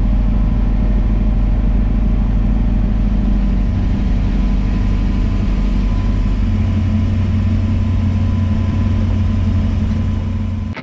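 Chevy II Nova's 406 V8 with a solid mechanical cam, heard from inside the cabin while driving at street speed: a steady, deep rumble. Its note shifts upward about six and a half seconds in.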